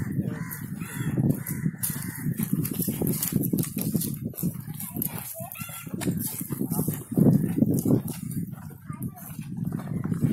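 Indistinct voices of a group walking together, with crackling footsteps on dry ground and a bird calling now and then.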